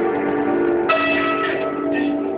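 Instrumental music: sustained ringing notes from a pitched instrument, with a new note struck about a second in.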